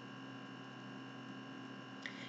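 Steady electrical hum with a faint hiss underneath: the recording's background noise, with no speech.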